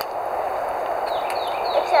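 A bird singing a quick run of down-slurred whistles, about four a second, starting about a second in, over a steady outdoor background hiss.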